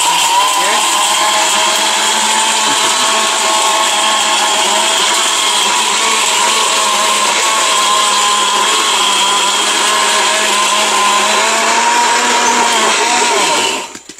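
ORPAT mixer grinder's motor grinding powder and water into a wet paste in its stainless-steel jar. It starts at once, runs at a steady high speed, and winds down with falling pitch as it is switched off just before the end.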